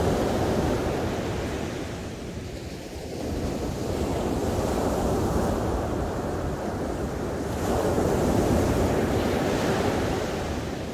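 Ocean surf breaking and washing up a sandy beach, a steady rushing that swells and eases with the waves. It is loud at the start, dips about two to three seconds in, then builds again to a peak near the end.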